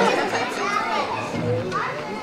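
Children's voices chattering and calling out over one another in a large hall, a crowd of young spectators talking during a pause in the drumming.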